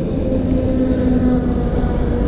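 Wind buffeting the microphone as a rainstorm arrives, a heavy steady low rumble, with a faint engine hum from passing traffic underneath that dips slightly near the end.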